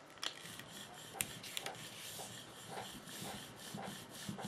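Hand brayer rolling back and forth across paper with a faint rubbing rasp, in repeated strokes about twice a second, laying down a gradient of ink.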